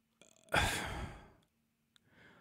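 A man sighing: one breathy sigh about half a second in that fades away within a second.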